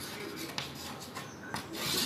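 Chalk writing on a blackboard: a run of short, irregular scratching strokes as a word is written out.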